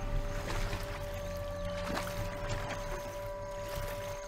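A steady hum made of several held tones, with a few faint clicks and taps.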